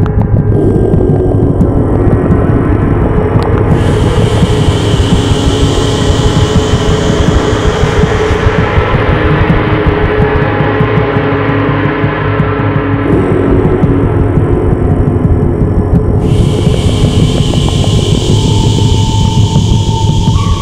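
Sound-healing music built on a sustained gong wash: a dense, rumbling mass with steady low drone tones. A brighter high shimmer comes in twice, a few seconds in and again near the end.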